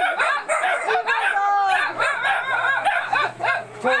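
A rooster crowing once, about a second and a half in, over a busy mix of voices and small dogs yapping.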